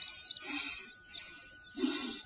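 Nasal breathing during alternate-nostril breathing (Anulom Vilom pranayama): several short hissing breaths drawn in and out through one nostril at a time. Birds call faintly behind.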